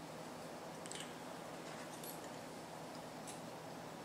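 Faint handling sounds of hands working thread on a hook in a fly-tying vise: three soft high ticks, about one, two and three seconds in, over quiet room tone.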